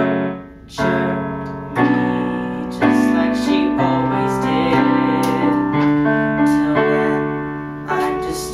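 Piano accompaniment playing sustained chords. It breaks off briefly just under a second in, then new chords are struck about once a second.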